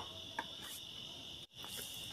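Faint, steady chirring of crickets, a continuous high-pitched insect drone that cuts out briefly about one and a half seconds in.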